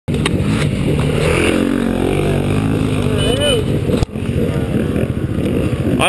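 Off-road motorcycle engine running steadily, with a short voice-like call a little after three seconds; the sound breaks off abruptly and resumes about four seconds in.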